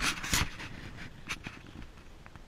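Working dogs panting close by, with a loud breathy burst in the first half-second followed by a few short clicks.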